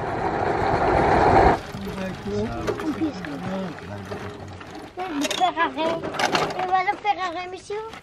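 Moped riding noise, engine and rushing air, growing steadily louder and then cut off abruptly about one and a half seconds in. After that, people talk, most clearly in the second half.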